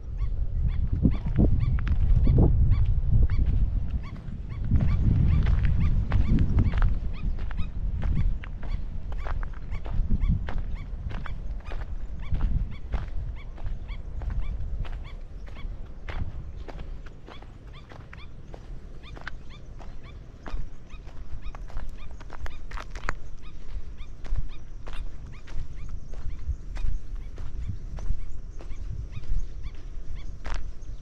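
Footsteps on a sandy dirt path, recurring about once or twice a second, with a low wind rumble on the microphone that is strongest in gusts over the first several seconds.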